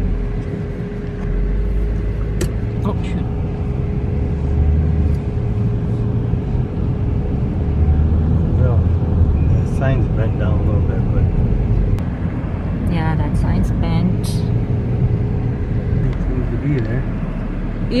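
A car driving slowly, heard from inside the cabin: a low rumble of engine and tyres, with a thin steady hum that stops near the end.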